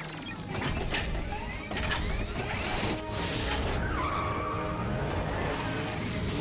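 Cartoon vehicle sound effects, motors and swooping whooshes as the vehicles set off, over an action music score.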